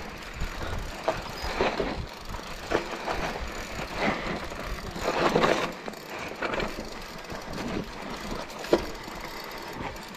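Mountain bike rolling downhill over loose gravel and rocks: tyres crunching on stones and the bike rattling over bumps, with irregular knocks, a louder rough stretch about halfway and a sharp knock near the end.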